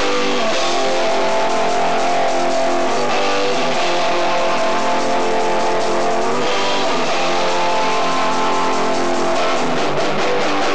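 A punk rock band playing live, led by an electric guitar holding loud, steady chords. The chord changes about three seconds in and again near seven seconds.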